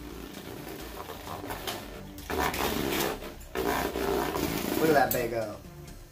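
Beyblade Burst top spinning on a plastic stadium floor: a steady scraping whir that grows louder from about two seconds in, then eases off near the end.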